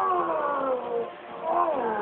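A dubbed cartoon character's drawn-out yells, two long cries that each slide down in pitch, the second rising sharply before it falls about a second and a half in. They come through a TV speaker recorded on a phone, so the sound is thin with no top end.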